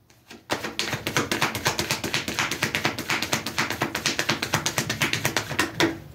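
Tarot cards being shuffled by hand: a fast, even run of card taps, about ten a second, starting about half a second in and stopping just before the end.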